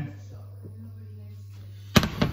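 A steady low hum, then one sharp knock near the end as the glass bowl of tempura batter is set down beside the pan.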